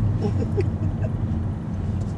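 Steady low rumble of a car's engine and road noise heard inside the cabin while creeping along in slow traffic.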